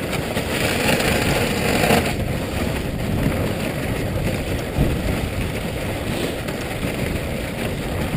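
Steady rushing noise of a wooden dog sled gliding fast over packed snow behind a running dog team.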